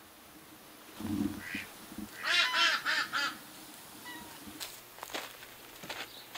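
A bird calls a quick run of about six harsh notes, with a lower, shorter call about a second before it. A few faint knocks come near the end.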